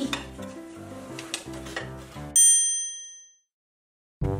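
Light background music with small clinks of stacked plates and a glass being picked up, then, about two and a half seconds in, a single bright ding that rings and fades away into silence, a transition sound effect.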